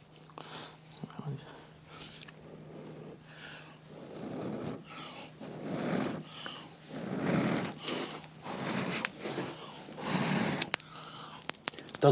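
Flint struck against steel with a few faint sharp clicks, then about five long blows of breath, one every second and a half or so, on smouldering tinder to coax it into flame.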